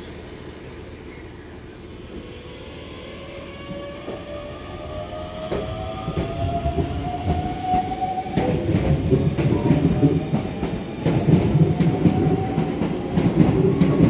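A train approaching along the rails, growing steadily louder with a rising whine. From about eight seconds in it becomes a heavy rumble with clattering knocks as the wheels run over the rail joints.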